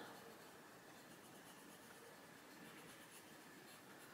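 Faint, steady scratching of a Staedtler Ergosoft coloured pencil shading on paper.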